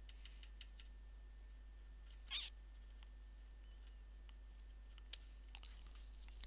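Quiet workbench room tone with a few faint clicks from small parts being handled, and one brief squeak about two seconds in.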